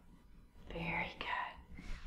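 After a half second of near silence, a woman's soft, half-whispered voice lasting about a second.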